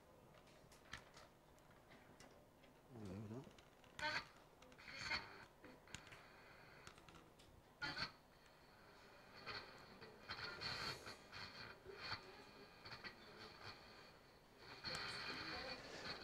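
Small battery-less radio receiver, powered through a rectifier rather than batteries, playing faintly while not tuned to a station. Scattered crackles and clicks give way about halfway through to a thin, steady high whistle with hiss, a little louder near the end.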